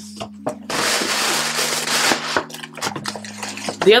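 A bag rustling as items are handled inside it: a dense rustle lasting about a second and a half, starting about a second in, with a few light clicks and knocks around it.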